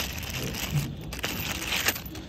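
Clear plastic packaging bag crinkling and rustling as it is pulled off a new engine mount, with a sharp tick near the end.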